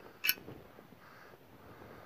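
Small metal shotgun part, the light (gas) piston, handled in gloved hands: one brief sharp click about a quarter second in, then faint handling noise.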